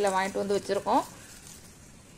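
A woman speaking for about the first second, then only faint steady background hiss.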